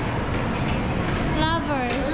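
A steady low background rumble with a person's voice heard briefly near the end.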